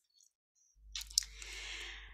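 Near silence at first. Then a low electrical hum comes in, with two faint clicks about a second in and a soft noise of about a second on a computer microphone as the presentation slide is changed.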